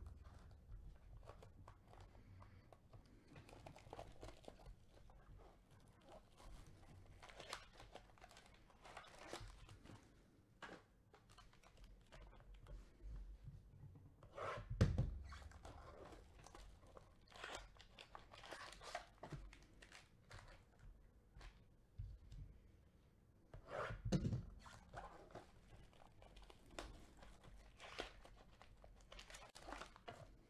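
Trading card hobby box being torn open by hand: wrapper and cardboard tearing and crinkling in short bursts, with a couple of louder knocks about halfway and three-quarters of the way through.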